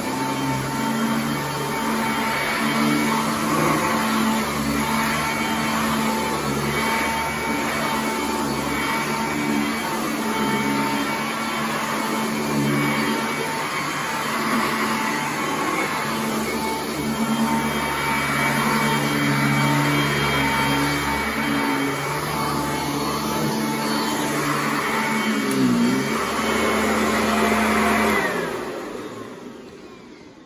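Upright vacuum cleaner running over carpet with a steady motor hum, then switched off near the end, its motor winding down in a falling tone.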